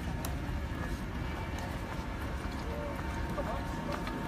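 Steady low rumble of a land train on the move, heard from aboard: its engine and tyres running on the road.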